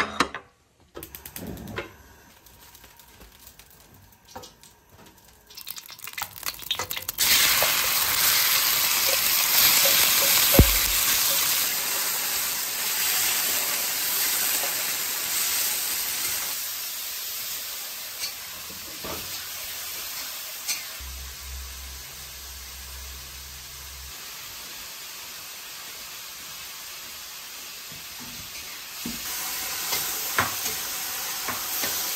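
Chunks of meat stir-frying in a wok with a metal spatula. A loud sizzle starts suddenly about seven seconds in, then gradually settles to a steadier, quieter frying sound.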